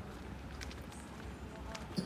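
Footsteps on a concrete walkway, a few faint scuffs, over a steady low rumble of wind on a phone microphone.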